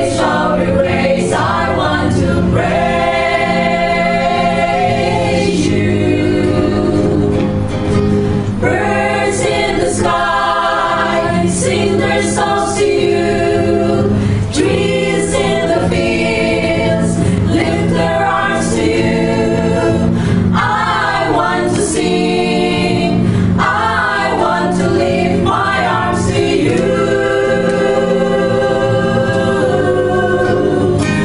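A church choir singing a Christian song in long held phrases, with steady low notes sounding beneath the voices.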